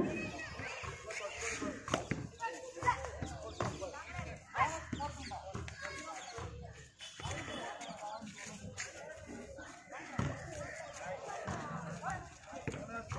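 Several voices of players and onlookers calling out and chattering at a distance, in overlapping, broken bursts, with a few brief sharp sounds among them.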